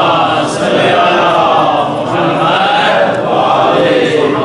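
A crowd of men chanting together in unison, in long drawn-out phrases with a short break about two seconds in.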